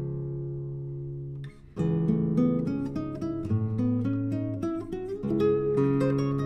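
Solo acoustic guitar. A held chord rings out and fades, then after a brief gap a run of plucked notes begins, under two seconds in.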